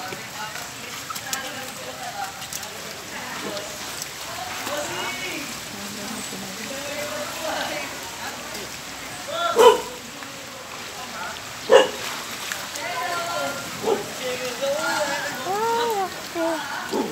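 A dog barking a few times, the two loudest barks about two seconds apart near the middle, over scattered people's voices and the steady hiss of rain and fast-running floodwater.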